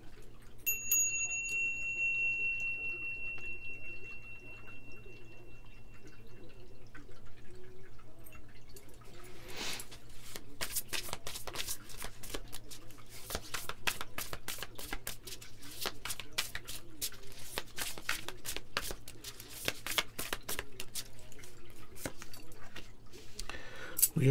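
A small brass bell struck once about a second in, one high ringing tone that fades away over about six seconds. From about ten seconds in, a deck of tarot cards being shuffled by hand: a long run of quick card flicks and clicks.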